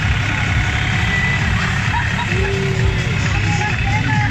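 Parade float's towing engine running steadily at close range, under crowd chatter and some music.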